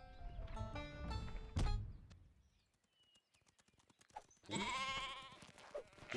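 Cartoon score music ends on a sharp hit a little under two seconds in. After a quiet gap, a cartoon sheep gives one long, wavering bleat near the end.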